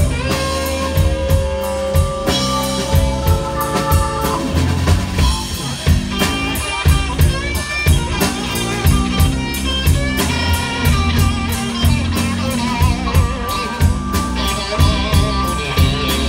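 Live blues band playing an instrumental passage: electric guitar lead with held and bent notes over drum kit, bass and piano.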